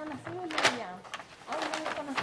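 Indistinct conversation: people talking to one another away from the microphone, in short overlapping phrases.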